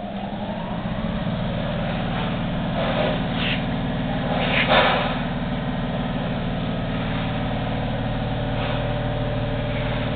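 Electric motor on an ENCO 13x40 engine lathe starting up, its hum rising in pitch over the first second and then running steadily. A short louder rattling noise comes about four and a half seconds in.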